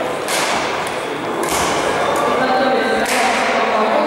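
Badminton rackets striking a shuttlecock in a rally: three sharp hits, roughly a second or more apart, each ringing on in the echoing hall.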